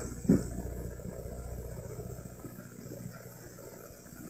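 Low, steady rumble of a vehicle engine running, with a brief voice-like sound about a third of a second in.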